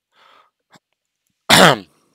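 A man coughs once, a short loud burst near the end, after a faint breath in.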